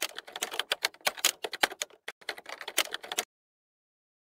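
Sound effect for an animated like-and-subscribe button: a rapid, irregular clatter of clicks like fast typing on a keyboard. It cuts off suddenly a little past three seconds in.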